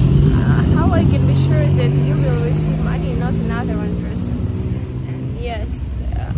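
A motor vehicle engine running close by with a steady low hum that slowly fades, under a woman's speech.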